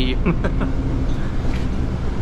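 Cabin noise inside a Nova LFS hybrid city bus under way: a steady low rumble of the drivetrain and road.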